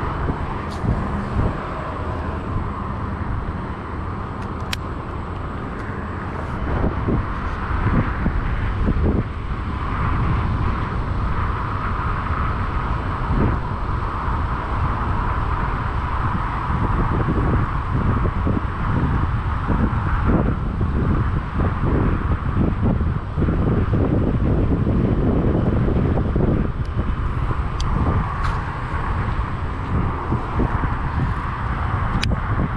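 Wind buffeting a head-mounted action camera's microphone, a continuous low rumble in uneven gusts that grows louder from about six seconds in, over a faint hum of distant road traffic.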